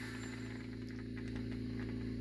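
Steady low electrical hum with no other event.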